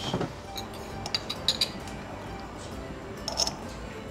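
Cutlery clinking against ceramic tableware: a few light clinks about a second in and a couple more near the end, over quiet background music.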